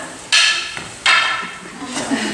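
Two sharp clacks of wooden sticks striking each other in a stage sword fight, the second about three-quarters of a second after the first, each dying away quickly with a slight ring.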